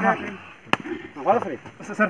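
People talking, with a single sharp click or knock a little under a second in.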